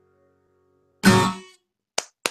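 Acoustic guitar: the last ringing notes fade out and there is a pause. About a second in comes one loud, sudden strum that ends the song, dying away within half a second. A single sharp clap-like click sounds at the very end.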